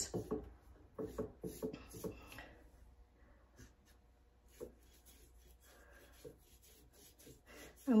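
Soft scratching strokes of a paintbrush dabbing chalk paint onto glass, with a single light knock about four and a half seconds in.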